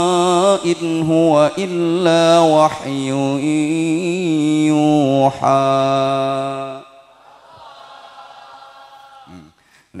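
A man's voice chanting a long, melismatic religious melody into a microphone, its held notes wavering in pitch. It breaks off about seven seconds in, and a much quieter stretch follows.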